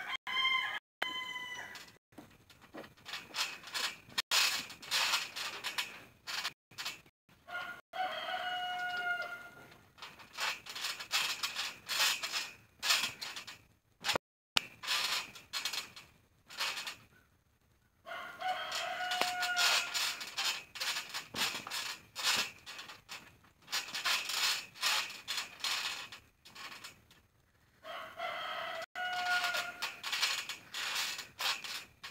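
A rooster crowing four times, roughly every ten seconds, over frequent sharp thumps and knocks from a trampoline being bounced and wrestled on.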